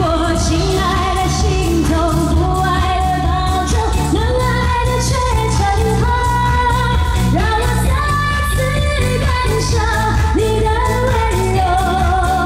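A woman singing a Mandarin pop song live into a handheld microphone over an amplified backing track with a steady beat.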